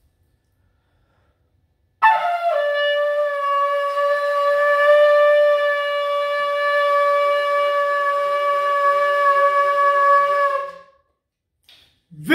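A long, spiral horn shofar blown in one long held note. It starts abruptly about two seconds in with a brief wavering slide in pitch, settles into a steady tone for about eight seconds, then tails off.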